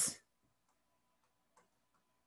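A spoken word trails off at the very start, then near quiet with a few faint, scattered clicks.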